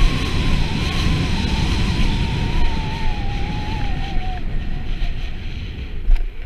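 Wind rushing over a body-mounted action camera's microphone at downhill speed, mixed with the hiss of snow sliding under the rider through soft, cut-up snow. A thin wavering whistle drifts slowly lower and stops about four seconds in.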